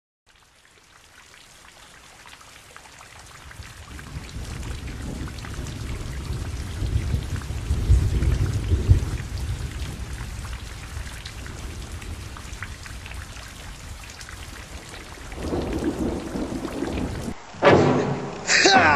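Rain falling with rolling thunder, fading in from silence over the first few seconds; the deepest thunder rumble swells around the middle, and the sound cuts off abruptly just before the end.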